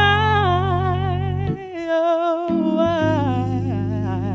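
A woman singing one long wordless note with vibrato that slides downward near the end, over sustained electronic keyboard chords.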